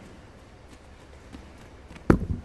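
Bare feet padding across gym mats: a few faint steps over a steady low room hum.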